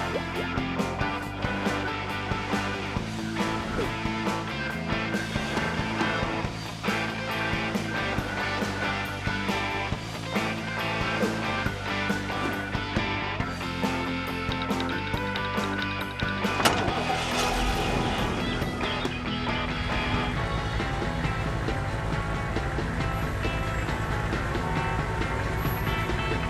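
Cartoon background music throughout. About two-thirds of the way in, a cartoon fire truck's engine comes in under the music and runs steadily with a low, even pulse.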